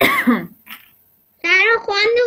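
A child's voice coming over an online video call: a brief sharp vocal sound with a falling pitch at the very start, then the child speaking from about a second and a half in.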